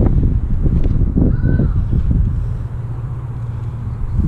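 Wind buffeting the camera microphone: a loud low rumble that rises and falls in gusts.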